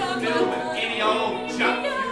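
Singing, with sung notes that waver in pitch, in a vibrato style.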